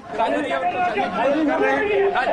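A crowd of men's voices talking over one another, with no single clear speaker.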